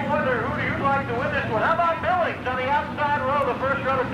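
A man's voice over a public-address system, the words unclear, over a steady low rumble.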